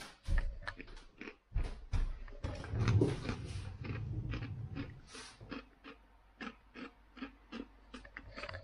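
Irregular short scratches and clicks of papers and small objects being handled on a desk, with a low rumble of a handheld camera being moved about three seconds in.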